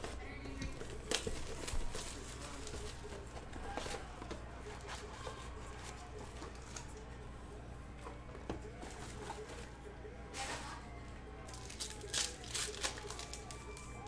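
Plastic shrink-wrap torn and crinkled off a sealed box of trading cards, then foil card packs rustled as they are handled, with scattered sharp crackles.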